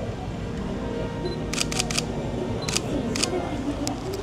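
Camera shutter clicking in short bursts: three quick clicks about one and a half seconds in, two more just before three seconds, then single clicks, over a steady low hum and background voices.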